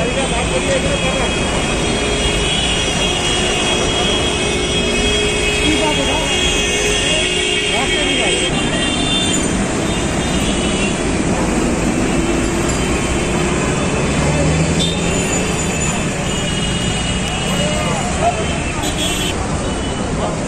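Busy street noise: traffic and people's voices and calls, at a steady level throughout.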